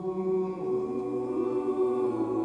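Mixed high school choir singing held chords, with a lower voice part settling in about half a second in.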